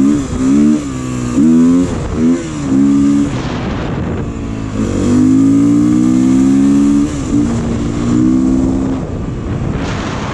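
Beta dirt bike engine accelerating under the rider, the revs rising and dropping several times in the first three seconds, then a longer steady pull from about five seconds in that eases off near the end, with wind rushing over the microphone.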